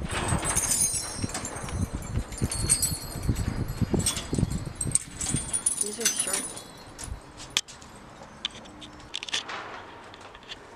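Metal key blanks hanging on hooks of a key-display rack jangling and clinking against each other as a hand brushes through them: a busy scatter of bright metallic chinks that thins out after about six seconds.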